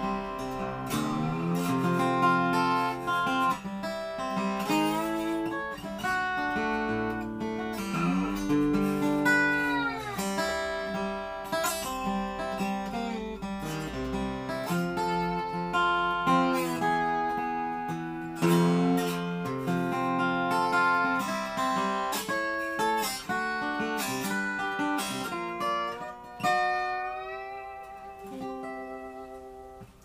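Replica Weissenborn hollow-neck Hawaiian lap steel guitar in open C tuning, played solo with a steel bar: plucked notes and chords with sliding glides up and down in pitch. It fades out on a ringing note near the end.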